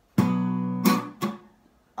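Acoustic guitar strummed in a reggae pattern: one down strum of a B minor chord rings for most of a second. A sharp muted stroke then cuts it off, followed by a second short muted stroke.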